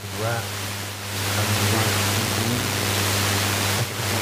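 Steady hiss with a low electrical hum underneath. A brief faint voice comes near the start, and the hiss grows louder about a second in.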